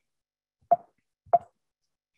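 Two short, soft clicks about two-thirds of a second apart, in an otherwise silent pause.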